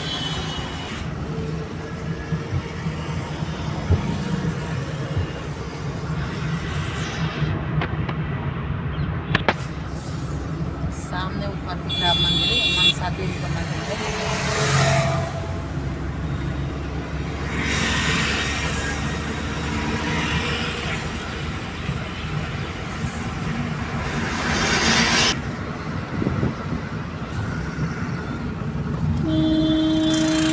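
Steady road and engine rumble heard inside a moving car's cabin on a highway, with other vehicles swelling past. Vehicle horns honk twice, once a little before halfway and again at the very end.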